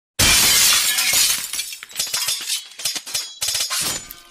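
Glass shattering as an edited sound effect: a sudden loud crash about a quarter second in, then a long scatter of small tinkling pieces that thins out over the next few seconds.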